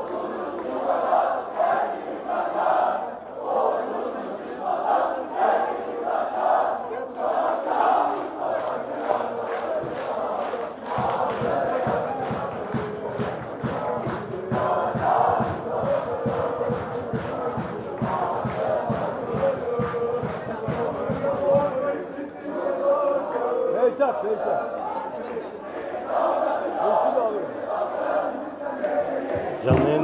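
Football supporters in the stands chanting together in unison over a steady, rhythmic beat.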